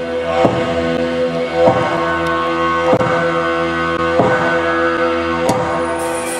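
Didgeridoo drone blended with sustained keyboard tones, with a regular beat striking about every second and a quarter.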